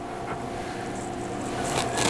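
Ham radio go-box case being turned around on its round wooden turntable base: a steady, even rubbing noise with a faint hum underneath.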